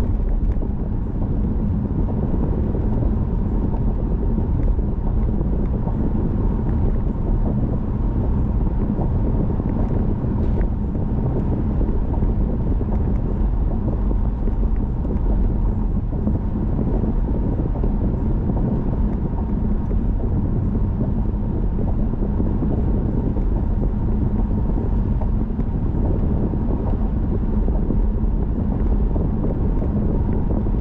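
Steady road and engine noise of a car being driven, heard from inside the cabin: a continuous low rumble with a faint steady hum.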